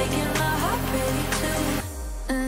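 Electronic dance music playing from a live DJ mix on a two-deck controller, two tracks running at 124 BPM. Near the end the bass and the highs drop out, leaving only the middle of the mix.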